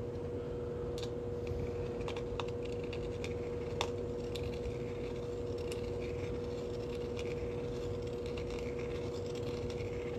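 Small scraping clicks of a hand deburring tool working the inside edge of a coin ring, scattered and irregular with one sharper click near the middle, over a steady electrical hum.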